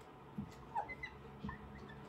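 Dry-erase marker squeaking on a whiteboard in several short strokes while writing numbers and a division bracket.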